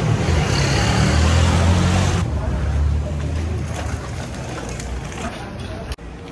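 A motor vehicle's engine running, with a loud rushing hiss over it that cuts off abruptly about two seconds in. The engine rumble then slowly fades.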